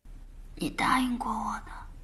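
A young woman's voice speaking softly, close to a whisper, for about a second, over a faint steady low hum.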